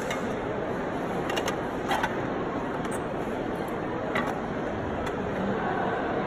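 Paper business cards and a clear plastic box being handled and tipped into a tray, making a few light clicks and rattles. These sit over the steady background noise of a large exhibition hall.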